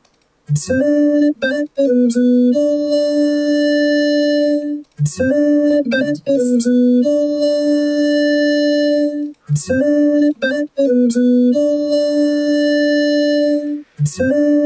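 Vocoded vocal from FL Studio's Vocodex: a sung line turned into a synth-keyboard-like voice, the carrier playing the singer's own notes converted from the vocal. A short, mostly held phrase plays three times, about every four and a half seconds.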